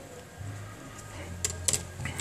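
Light handling of smartphone parts, the circuit board and plastic frame: two short sharp clicks about a second and a half in, over a low steady hum.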